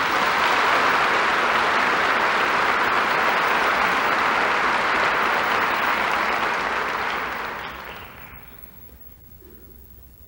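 A large seated audience applauding in a hall, steady for about seven seconds and then dying away near the end.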